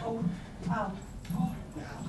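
Speech: an audience member's voice, a few short hesitant syllables in the middle of a sentence of thanks.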